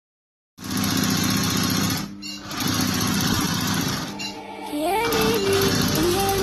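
Embroidery sewing machine stitching at high speed, a fast steady needle rhythm that starts about half a second in and briefly drops off twice. A music melody comes in over it near the end.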